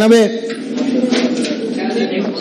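A man's voice saying a short drawn-out word, then quieter voice sounds.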